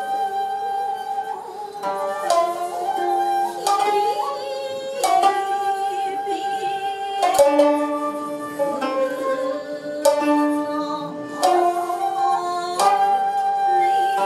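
Japanese sankyoku ensemble of koto, two shamisen and shakuhachi playing together. Sharp plucked string notes fall over long held flute tones.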